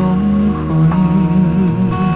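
A recorded song playing: a slow Taiwanese-language ballad with guitar accompaniment and a melody line that wavers with vibrato as it moves from note to note.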